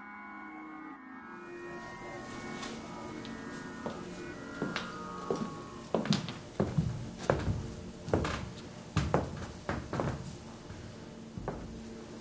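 Footsteps of two people walking on a hard floor, about two steps a second, growing louder as they approach. Faint background music lies under the first few seconds.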